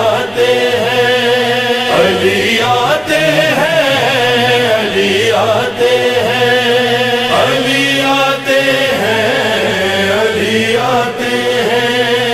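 Devotional vocal backing for a manqabat: voices chanting long held notes that glide between pitches, in phrases of about two seconds each.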